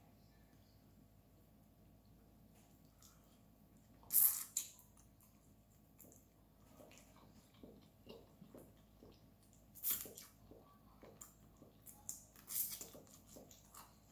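Close-miked eating sounds: chewing, wet mouth smacks and small clicks as seafood is picked apart by hand. Quiet at first, then a few louder sharp smacks about four, ten and twelve and a half seconds in.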